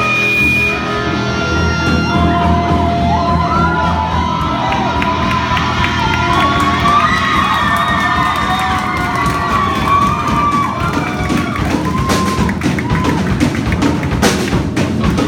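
Live rock band playing: electric guitars, bass, keyboard and drum kit. A wavering, sliding high melody runs over sustained low notes, and drum hits grow busier near the end.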